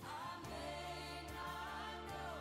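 Recorded background music: a choir singing a gospel-style song over a steady bass line.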